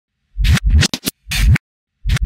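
DJ-style record-scratch sound effects: about five short, loud scratches with sharp cut-offs, the last one the longest.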